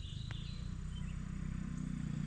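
A Honda CRF50 dirt bike's small single-cylinder four-stroke engine running at low revs with a steady low pulse.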